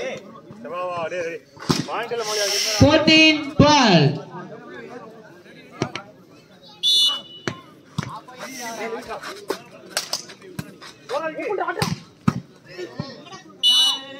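Volleyball game sounds: players' shouts, scattered sharp smacks of the ball, and a referee's whistle blown briefly twice, about seven seconds in and again near the end.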